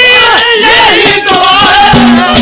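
Live Haryanvi ragni folk singing: loud male voices in held and gliding notes over the accompanying band, with drum strikes between.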